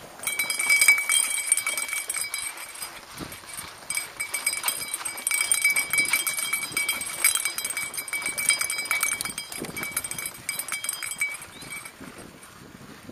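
Mountain bike rattling and clattering as it rides fast over a rough, dry dirt singletrack: a dense run of sharp knocks and clicks from the frame, chain and camera mount, with tyre crunch on sandy soil. A steady high-pitched tone runs under the clatter for most of it.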